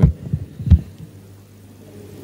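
Two dull low thumps picked up by an open microphone, about three quarters of a second apart, followed by a faint steady hum from the sound system.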